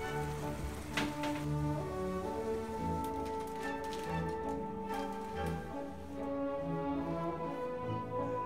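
Background instrumental music with sustained, slowly changing notes.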